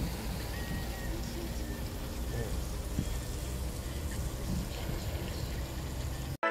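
Steady road noise from a moving car: a low rumble under an even hiss, with no distinct events.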